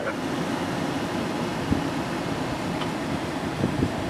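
Steady running noise of a vehicle: an even, unbroken rumble and hiss with a couple of faint ticks.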